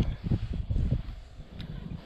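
Low, uneven rumbling and rustling noise on the microphone that dies down about a second in.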